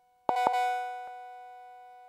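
A home-built TR-808 cowbell clone circuit struck once, about a quarter second in, with a doubled attack: two steady clashing tones that ring on and fade slowly instead of dying quickly, plus a faint click about a second in. The builder says the module does not work correctly.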